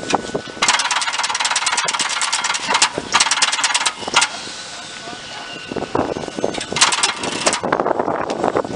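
Electric train's under-floor control equipment operating, its contactors and switch gear clicking and crackling in rapid runs: one long run of about three and a half seconds starting just under a second in, then scattered rattles and a second short run near the end.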